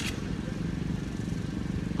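Small motorcycle engine running, a steady low sound with a fast, even pulse.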